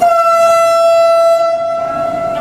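Loud, steady single-pitched warning tone in the train cab, starting suddenly. Its upper overtones drop away about a second and a half in while the tone itself holds.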